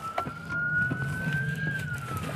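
Police car siren in a slow wail, its single tone rising in pitch and starting to fall near the end, heard from inside the moving patrol car over a steady low engine and road rumble.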